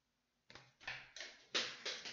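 Handling noise: a quick run of five or six rustling knocks, about three a second, starting half a second in.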